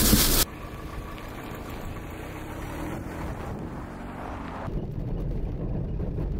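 Car engine running, heard from inside the cabin as a low, steady rumble. A louder rushing noise in the first half second cuts off suddenly, and the rumble grows a little stronger near the end.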